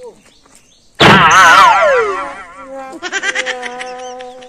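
A comedic sound effect: a sudden hit about a second in, followed by a wavering tone that slides down in pitch, then a quieter steady tone near the end.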